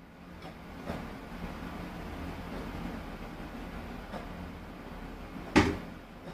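A steady low background hum with a few faint taps, then one sharp knock near the end.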